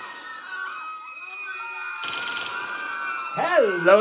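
Faint, steady tones with a short burst of hiss about two seconds in, then a man's drawn-out "Hello" that slides up and down in pitch near the end.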